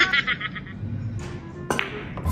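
A burst of edited-in music or sound effect ends about half a second in. After a quieter stretch, a single sharp click of a pool shot sounds near the end, the cue or balls striking.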